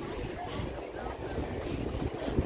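Wind noise on the microphone over the steady wash of ocean surf breaking against rocks.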